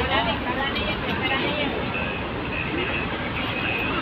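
Busy city street ambience: steady traffic noise with background chatter from a crowd of pedestrians crossing.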